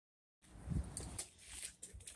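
Faint handling noise from a camera being moved: a soft low bump, then a few light clicks.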